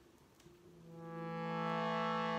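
Shruti box drone on the notes A and E, fading in from quiet about half a second in and settling into a steady chord as the bellows are pumped.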